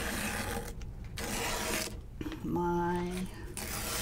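The point of an embroidery wand scratching along the paper backing of a sticky water-soluble stabilizer, scoring it in three strokes with short pauses between them. A brief hummed voice sound comes a little past halfway.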